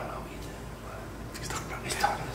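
Soft whispered voices at close range, with a brief louder syllable at the start and hissy whispered sounds building toward the end.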